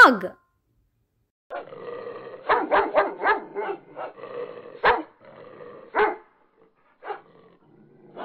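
Two dogs barking and growling as they play-fight. A quick run of sharp barks with rough growling between them starts about a second and a half in and lasts for several seconds, then a few single barks follow near the end.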